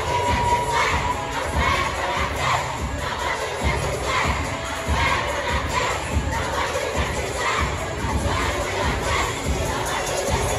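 A crowd of schoolchildren cheering and shouting together, continuous and loud.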